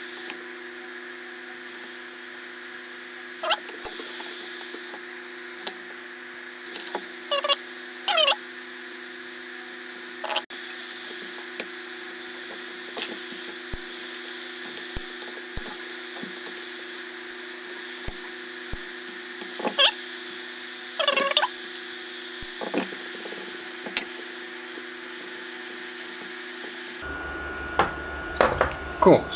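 Scattered sharp clicks and snaps of hand work on a circuit board: side cutters snipping off component leads and tools tapping the PCB. Under them runs a steady electrical hum.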